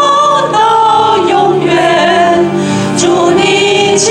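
Church congregation singing a worship hymn together, the voices holding long notes with vibrato.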